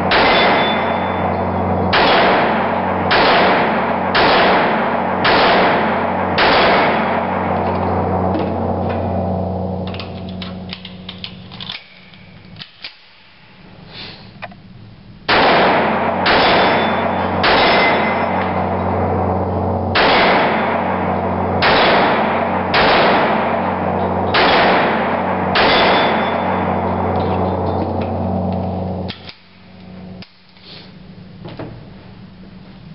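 Dan Wesson Heritage 1911 pistol in .45 ACP firing two strings of shots about a second apart, with a pause of a few seconds in the middle filled with small clicks and rattles. Each shot rings on in a hard concrete room.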